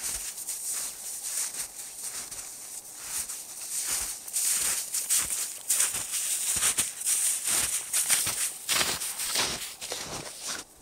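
Snowshoes crunching in snow with each step of a walker, a string of crisp, irregularly spaced crunches that grow louder in the second half.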